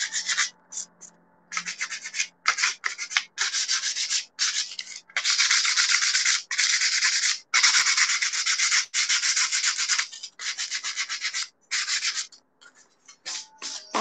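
Hand sanding a thin, hard, painted wooden cutout with a small piece of sandpaper. It begins as short scratchy strokes, then runs as longer continuous strokes in the middle and breaks off near the end. The strokes rub through fresh paint on the edges to give it a worn, distressed patina.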